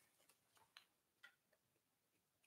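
Near silence: room tone with a few faint, brief clicks, about two, less than a second apart.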